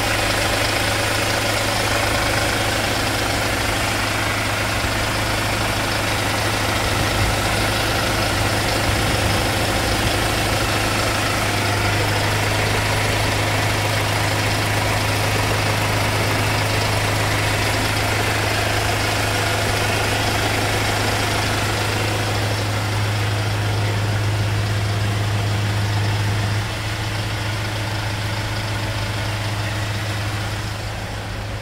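Hyundai Starex van's engine idling steadily, heard from underneath the vehicle, with a constant low hum; it gets a little quieter near the end.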